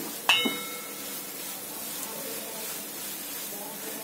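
A spatula stirring and scraping a sticky grated coconut and jaggery mixture in a nonstick frying pan over steady low frying noise. The spatula clinks once against the pan about a third of a second in, with a short ringing.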